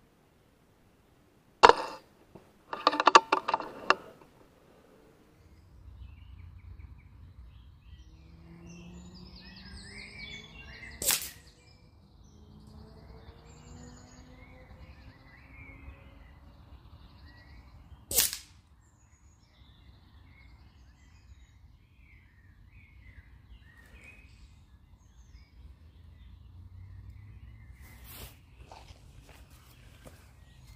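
Brocock Sniper XR .22 PCP air rifle firing: a sharp crack a couple of seconds in, followed by a quick run of loud clicks, then two more single cracks, one before and one after the middle. Lighter clicks come near the end, and birds chirp faintly throughout.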